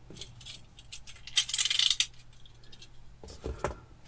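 Snap-off craft knife's blade being slid back into its handle: a quick run of ratcheting clicks about one and a half seconds in. Near the end come light knocks of tools and foam parts being handled on a cork board.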